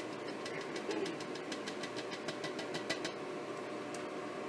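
Rapid, even tapping of a blender cup against a glass mason jar, about seven light knocks a second, shaking powdered egg out into the jar; the tapping stops about three seconds in.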